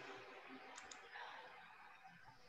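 Near silence with faint room noise, broken by a quick double click of a computer mouse just before a second in.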